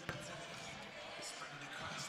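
Low arena ambience after a basketball game: faint distant voices and murmur in a large gym. A single sharp click comes right at the start.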